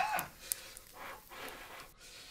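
A man's pained groan trailing off at the start, then two short, hard breaths hissed out about a second and a second and a half in, as he strains against the heat on his palm. A single sharp click comes about half a second in.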